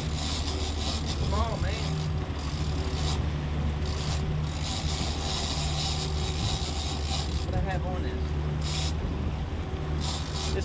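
Three Mercury outboard motors running at trolling speed, a steady low drone, under a constant hiss of wake water and wind on the microphone.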